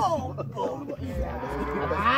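Men's voices calling out and hollering, overlapping, with one drawn-out call rising in pitch near the end.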